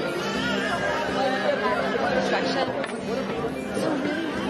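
Audience chatter, many voices talking at once in a large hall, over background music with long held low notes.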